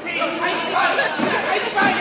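Several voices talking and calling out over one another, echoing in a sports hall: spectators and cornermen at a boxing bout.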